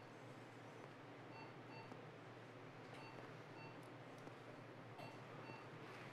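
Near silence: faint short electronic beeps from medical equipment, mostly in pairs every second or two, over a low steady hum.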